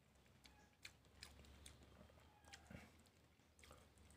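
Near silence with a few faint clicks: quiet chewing and a metal spoon touching a plate.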